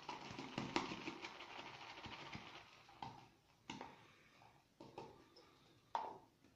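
Shaving brush whipping Proraso green shaving cream into lather in a bowl: a faint, rapid, wet crackling for the first three seconds or so, then a few scattered taps.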